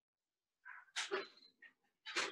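A dog vocalizing briefly and faintly in short sounds about a second in.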